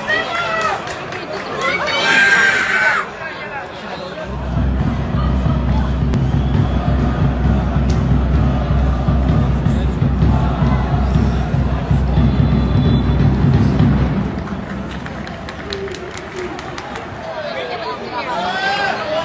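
Stadium crowd noise heard from the stands. Voices stand out in the first few seconds, and a loud, deep, steady rumble fills the middle of the stretch before fading about four seconds from the end.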